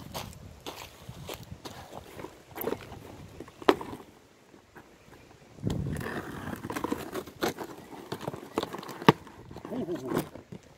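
A small knife cutting through packing tape and plastic wrap on a cardboard box, with scraping, crackling and a few sharp clicks. The sharpest clicks come about a third of the way in and near the end, and there is a busier stretch of scraping in the second half.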